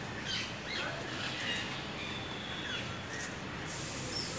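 Several short, high chirps and twitters from small birds, coming in quick separate notes over a steady outdoor background hum.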